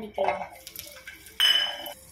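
Peeled garlic cloves tipped from a small steel bowl into a non-stick frying pan with a little oil. About one and a half seconds in there is a single sharp, ringing metallic clink of the steel bowl against the pan, which fades quickly.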